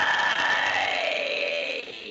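A man's distorted mid-range metal scream (extreme-metal "mid"), one sustained note that trails off near the end.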